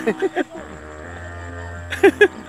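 A man singing a few lines of a folk song unaccompanied: short sung syllables at the start and again at the end, with a pause between that holds a low steady hum.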